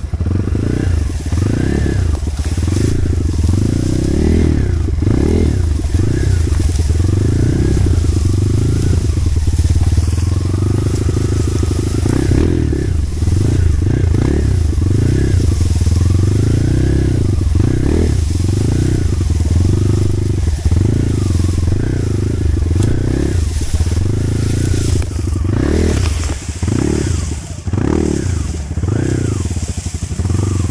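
Dirt bike engine being ridden on a trail, revving up and down over and over, its pitch rising and falling every second or so.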